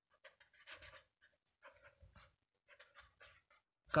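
A pen writing on paper: faint, irregular short strokes of the tip across the sheet as a word is written.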